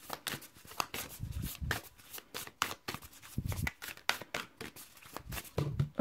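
A deck of tarot and oracle cards being shuffled by hand: a rapid, continuous run of light snaps and flicks of card edges, with a couple of soft, dull knocks about a second in and again past three seconds.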